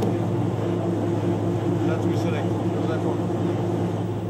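Winery machinery running with a steady, low hum.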